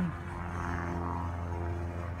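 A steady low hum with a ladder of even overtones, holding the same pitch throughout.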